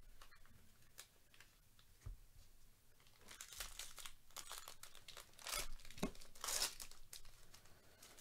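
Foil wrapper of a Bowman Draft jumbo trading-card pack being torn open and crinkled by gloved hands. A few faint rustles at first, then a run of crackling and tearing from about three seconds in, loudest in two bursts near the end.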